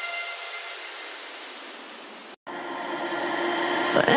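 Background electronic music at a transition: a white-noise sweep, a hiss with faint held tones, fading down to a brief dropout about two and a half seconds in, then building back up.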